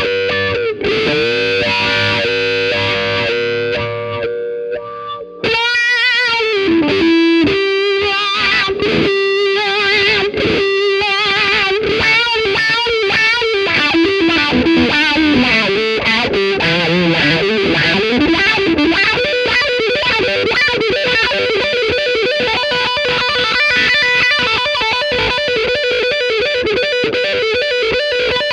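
Overdriven electric guitar through an Xotic XW-2 wah pedal: a chord rings and fades for about five seconds, then a fast lead solo follows with the wah rocked back and forth so the tone sweeps open and closed.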